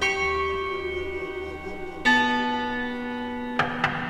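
A large bell struck twice, about two seconds apart, each stroke ringing and slowly fading. Sharp drum hits come in near the end.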